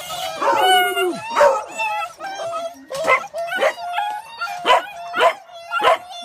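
Beagles baying and yelping, several calls overlapping at first, then a run of short high yelps about two a second.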